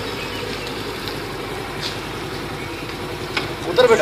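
A motor vehicle engine idling steadily, with a short loud sound just before the end.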